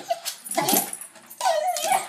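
Small black dog whining excitedly as it jumps up to greet a person: three high, wavering whines, the last one the longest.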